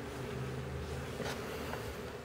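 A steady low hum or buzz, with a faint click just over a second in.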